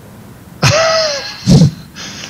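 A man clearing his throat into a close microphone, in two parts: a longer voiced one just over half a second in, then a short, deep one about a second later.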